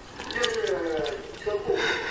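A person's voice in short, pitched utterances, falling in pitch about half a second in, with a few light clicks.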